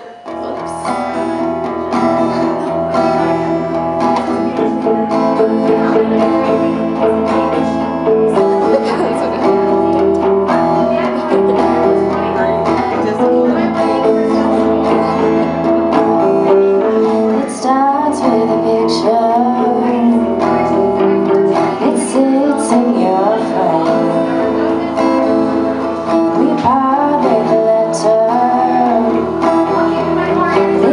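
Acoustic guitar strummed together with an electric guitar playing lead lines in a slow blues arrangement, played live.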